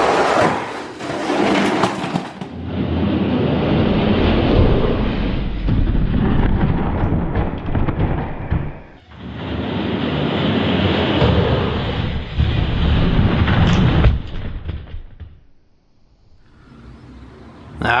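Die-cast Spin Master toy monster trucks racing down a long plastic track: a loud rumbling rattle of plastic wheels on the track. It comes in two long runs, broken briefly about nine seconds in, and dies away near the end.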